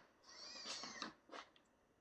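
Faint high electric whine of the Axial AX24 crawler's Micro Komodo motor as it climbs, with a few soft scuffs and knocks from the tyres and chassis about a second in.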